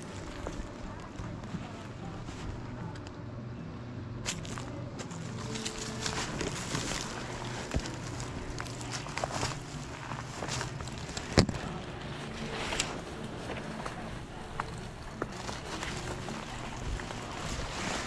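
Footsteps and conifer branches brushing and rustling against the camera and body while moving along a brushy bank, with scattered snaps and one sharp click a little past the middle, over a steady low hum.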